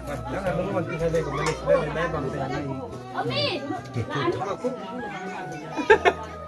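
Overlapping chatter of several adults and children talking at once, with a sharp loud sound just before the end.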